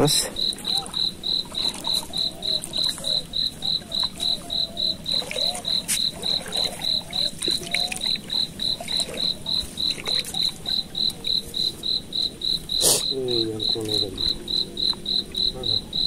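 Cricket chirping steadily, a short high-pitched pulse repeated about three times a second.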